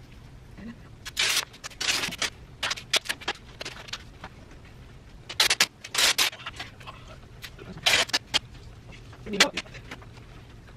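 Duct tape being pulled off the roll in a run of short, loud rips, some coming in quick pairs, with quiet gaps between them.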